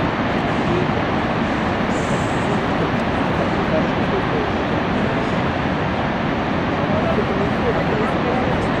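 Niagara Falls: a steady, loud rush of falling water that never lets up, with faint voices of people nearby.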